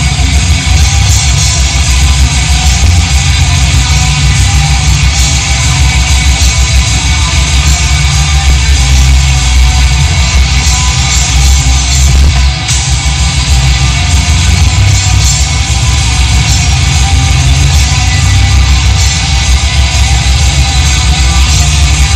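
Black metal band playing live: distorted electric guitars over fast, dense drumming, loud and unbroken, with a brief drop in level a little past halfway.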